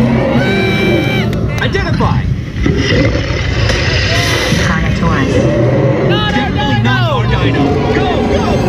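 Loud dark-ride audio: soundtrack music and effects with repeated high, arching cries that fall away, over a steady low rumble from the moving ride vehicle.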